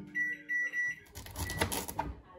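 Panasonic microwave oven beeping three times in quick succession as its keypad is pressed, with a low steady hum under the beeps. About a second later come a fainter single beep and some light knocking.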